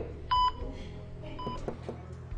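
Patient heart monitor beeping: two short, high, steady-pitched beeps about a second apart, the first loud and the second fainter, over a low steady hum.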